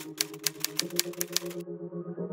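Typing on a laptop keyboard: quick, even key clicks about six or seven a second that stop abruptly near the end, over soft sustained background music.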